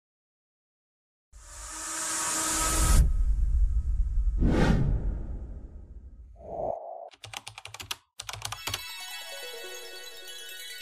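Intro sound effects for an animated logo: after a second of silence, a rising swell that cuts off suddenly at about three seconds, then a whoosh and a short tone. Near the end comes a rapid stutter of glitchy clicks, leading into ringing music tones.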